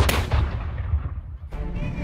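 A field cannon firing once at the start, its boom trailing off into a low rumble that fades over about a second and a half.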